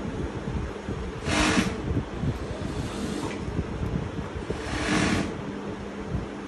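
Steady low hum and rumble of a garment sewing room, with two brief half-second rushes of noise, about a second in and near the end.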